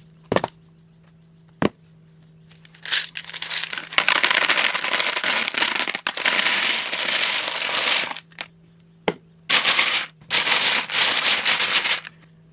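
Hundreds of small hard resin cubes poured from a plastic jar into a clear plastic tub, clattering against the plastic in a dense rattle that runs about five seconds, stops, then comes again for the last couple of seconds. A few single knocks come before the first pour and between the two.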